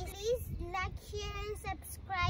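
A young child singing a few drawn-out, high-pitched notes.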